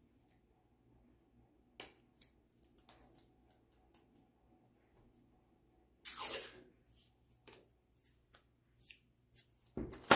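Masking tape being handled: scattered small clicks and crinkles, with a short rasp of tape pulled off the roll about six seconds in and a louder one at the very end.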